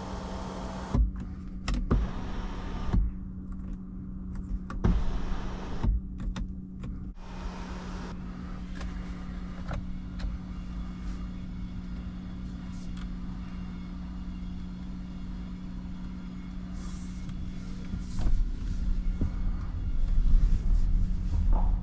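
Electric motor of a Nissan X-Trail's panoramic sunroof running with a steady hum inside the cabin, with several sharp clicks from the overhead switch and roof mechanism in the first seven seconds. Near the end, heavier knocks come in as the car starts to roll.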